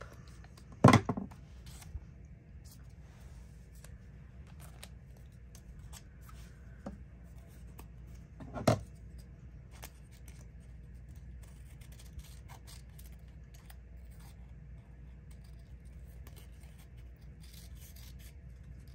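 Scissors cutting paper: a run of faint snips and paper handling, with two much louder sharp snaps, one about a second in and one about nine seconds in.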